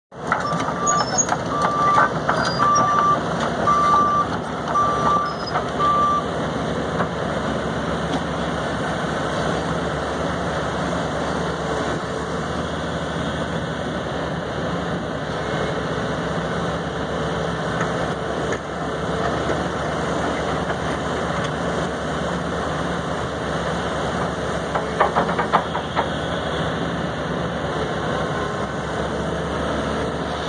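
Link-Belt 210 LX hydraulic excavator running, with its warning alarm beeping about six times in the first few seconds over the steady engine. The machine keeps running through the rest, with a few sharp knocks a little before the end.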